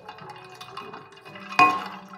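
Liquid being poured into a glass jug full of ice cubes, with one sharp glass clink about one and a half seconds in.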